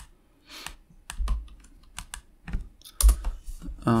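Computer keyboard typing: a few separate keystrokes as code is edited, some with a low thud, the loudest about three seconds in.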